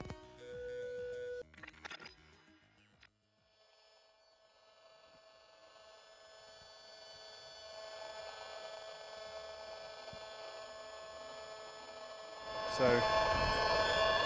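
Mobile phone mast emissions made audible through the speaker of a handheld RF meter with a directional antenna: a constant electronic buzz of steady tones, fading in about five seconds in and growing louder. Before it come a few short electronic beeps and then a moment of silence.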